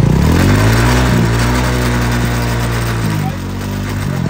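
Motorcycle engine revving up quickly and holding at high revs while the rear wheel spins, easing off slightly about three seconds in.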